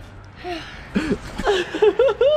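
A man and a boy laughing in short bursts, with a few brief voiced sounds between the laughs.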